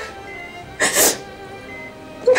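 Soft, sustained background music, with a woman's short, sharp tearful breath through the nose and mouth about a second in.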